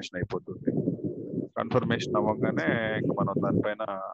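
Speech: a voice talking, its words unclear.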